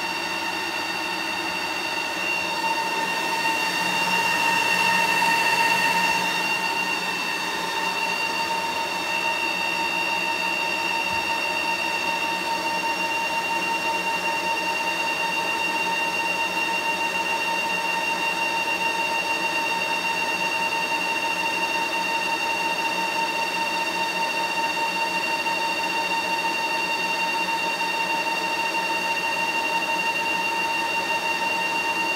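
HP ProLiant ML350p Gen8 server's cooling fans running during boot-up power and thermal calibration: a steady whine with several pitches that swells louder a few seconds in, then settles to an even level.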